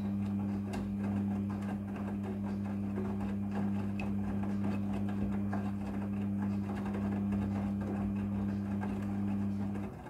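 Midea front-loading washing machine tumbling a wash load: a steady motor hum under the swishing of wet clothes turning in the drum. The sound cuts off right at the end as the drum stops.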